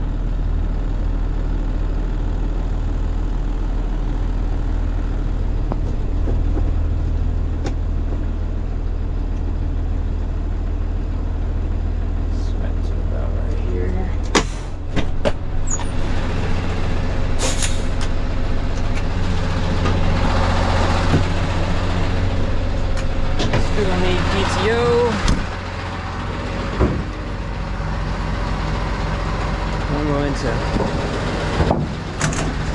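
Diesel engine of a Kenworth T270 rollback tow truck running steadily, heard from inside the cab while the truck backs up. About halfway through come sharp clicks and a short hiss of air, and the engine sound changes and then drops lower.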